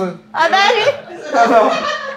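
A man's voice speaking with chuckling laughter mixed in.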